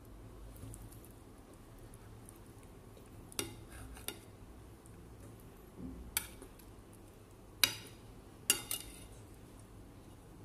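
A metal spoon clinking and scraping against a ceramic plate while breaking apart fried fish, several sharp clinks from about three seconds in, the loudest near the end.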